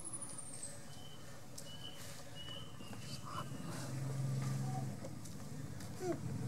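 Outdoor ambience with faint bird calls: a high whistle sliding down at the start, then thin high notes for a couple of seconds. A low steady hum swells in about four seconds in and is the loudest thing here.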